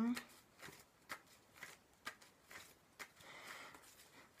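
A tarot deck being shuffled by hand: soft, short snaps of the cards roughly every half second, then a longer rustle of cards about three seconds in.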